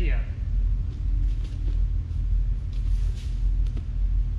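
A steady low rumble of room noise, with a few faint soft taps of bare feet stepping on foam training mats.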